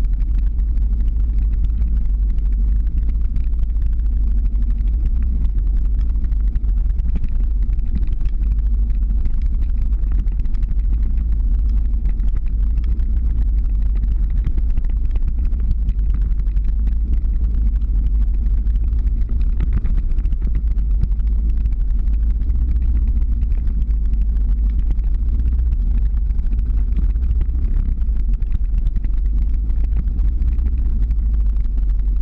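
Steady low rumble of the camera vehicle driving slowly up a mountain road, engine and road noise with no break.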